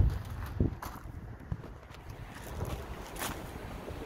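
A car door shutting with one heavy thump at the very start, then faint footsteps on gravel with wind buffeting the microphone.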